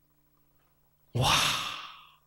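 A man's breathy, drawn-out exclamation "wah", like an awed sigh, starting about a second in after a pause and fading away.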